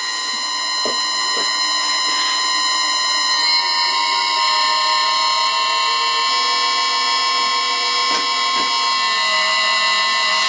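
Lathe's electric motor, run from a variable-frequency drive, whining with many steady high tones as it turns the spindle and stepped cone pulley through the V-belt. About three and a half seconds in, the tones shift as the drive speeds the motor up to 20 Hz. A few faint knocks.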